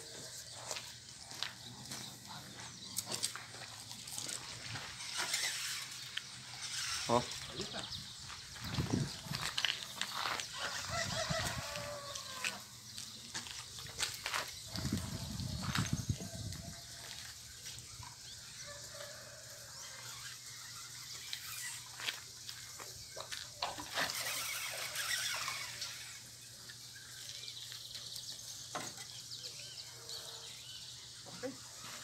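Faint outdoor ambience: distant voices and an occasional bird call, with scattered small knocks and a brief low rumble a little past the middle.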